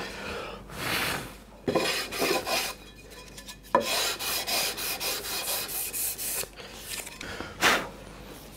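Hand rubbing strokes along a wooden guitar fretboard, irregular back-and-forth passes over the wood around a freshly filled 12th-fret inlay, with a sharp knock a little before halfway.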